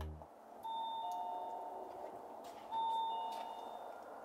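Two-note ding-dong doorbell chime rung twice, about two seconds apart: each time a higher note followed by a lower one, both ringing on and fading.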